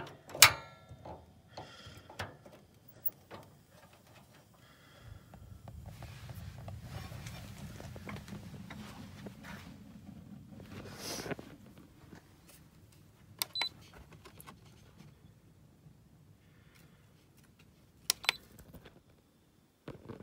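Mr. Heater Portable Buddy propane heater being lit: clicks from its control knob and piezo igniter, the loudest a sharp snap about half a second in. A faint low rumble follows for several seconds, with a few more scattered clicks.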